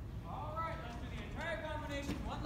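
Several high-pitched voices whooping and cheering as the curtain opens, each call rising in pitch and then held, starting just after the beginning and again near the end, with a few clap-like clicks.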